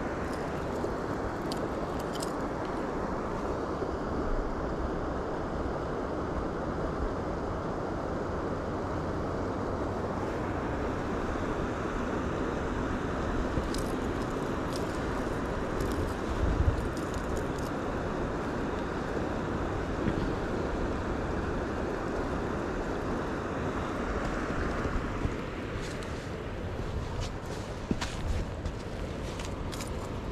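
Steady rushing of fast water through a spillway, with scattered small clicks and rattles from the treble hooks of a large musky swimbait being handled.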